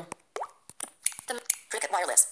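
Android screen-reader interface sounds on a phone: short clicks and a quick rising plop as a dropdown list opens, with brief snatches of fast synthetic speech.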